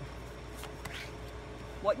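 Steady low electrical hum with faint soft sounds of a tarot card being drawn from the deck and laid on a cloth, a little under a second in.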